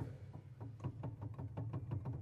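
Yamaha Disklavier E3 grand piano played in silent mode: with the hammers stopped short of the strings, no notes sound, only a quick, irregular run of faint knocks from the keys and action.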